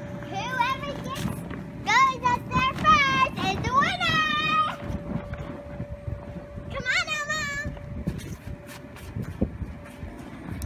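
A toddler's high-pitched squeals and wordless vocalising in several bursts over the first five seconds and again about seven seconds in, over the steady hum of the bouncy castle's air blower.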